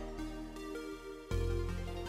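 Background music: held chords over a deep bass, with a new chord coming in about a second and a half in.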